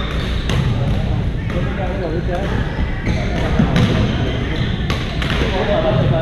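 Badminton rackets striking shuttlecocks: sharp, irregular hits from several courts in a large gymnasium, over a steady background of players' voices.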